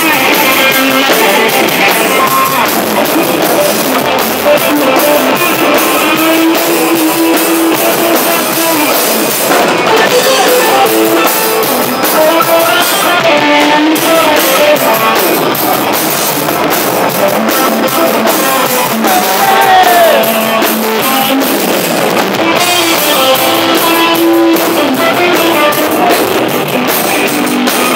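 Live band music from a drum kit and guitar, loud and continuous, picked up by a phone close to the stage.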